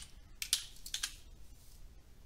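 A few light clicks of a computer keyboard, bunched about half a second to one second in, then only faint room tone.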